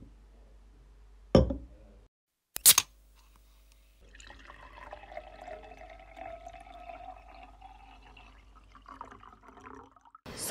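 Two sharp clinks of glass, then a drink poured into a glass for about five seconds.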